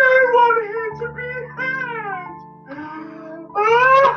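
A voice singing in wavering, sliding phrases over a backing track of held chords, fading briefly past the middle and coming back loud near the end.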